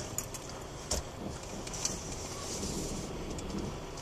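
Car cabin noise as the car moves off: a steady low engine and road rumble with a few light clicks and rattles, one sharper knock about a second in.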